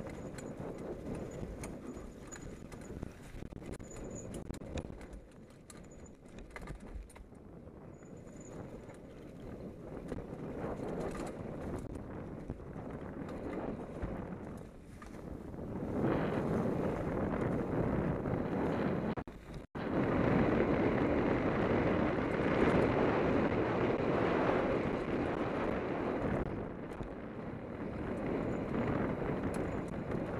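Downhill mountain bike running fast over a dirt trail covered in dry leaves: tyre roar with constant rattling knocks from the bike and wind on the microphone. It gets louder a little past halfway, with a split-second drop-out just before the loudest stretch.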